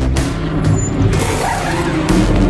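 A race car's engine under the soundtrack music, its pitch sweeping up and down in the second half.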